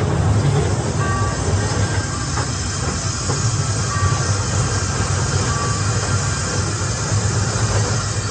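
A miniature ride train's cars rolling along their track with a steady low rumble, heard from the rear car. Music plays faintly over it, with a few short held notes.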